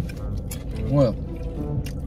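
A single short spoken word over steady background music.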